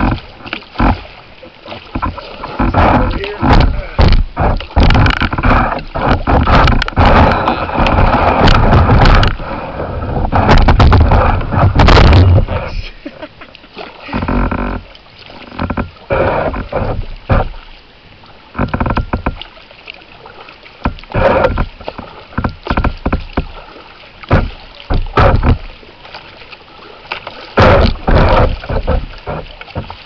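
Kayak paddling on a shallow river: a long run of irregular, loud water splashes from the paddle blades, with quieter gaps between strokes and a denser stretch about a third of the way in.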